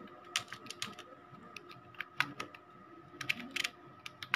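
Computer keyboard being typed on: irregular key clicks, with several in quick succession near the end.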